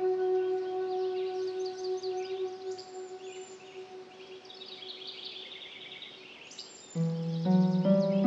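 A held ambient music chord fades out over the first few seconds, leaving recorded birds chirping and trilling in the background of the track. About seven seconds in, the music comes back suddenly with a new, louder chord.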